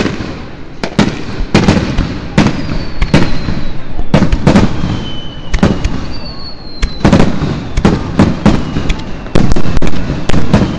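Aerial fireworks display: shells bursting overhead in quick, irregular bangs, with a few faint, slightly falling whistles in the middle. The bangs come thickest and loudest near the end.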